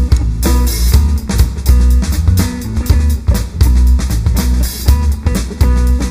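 Live rock power trio playing an instrumental passage: electric guitar, bass guitar and drum kit, with a steady drum beat over a heavy bass line and no vocals.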